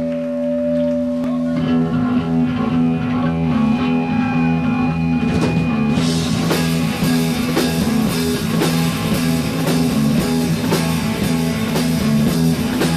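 Heavy metal band playing live on electric guitars, bass and drums: held low guitar and bass notes under a picked riff, then the full drum kit with cymbals comes in about halfway through and the band plays on at full volume.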